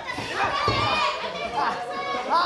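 Wrestling crowd calling out, several voices, some high, overlapping in a hall, with a dull thud about a third of the way in.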